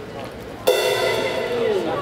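Electric guitar chord struck once, about two-thirds of a second in, ringing for about a second before a note slides down in pitch.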